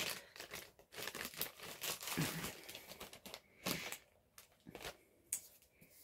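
Clear plastic bag crinkling and rustling as a tube of salt scrub is taken out of it: irregular crackles for the first few seconds, thinning to a few faint crackles near the end.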